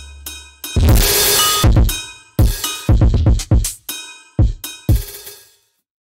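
Programmed hip-hop style drum beat from the Drum Weapons 4 drum-machine plugin: kick, snare and hi-hat hits with a low held bass note at the start and a long bright cymbal-like hit about a second in. The beat stops about half a second before the end.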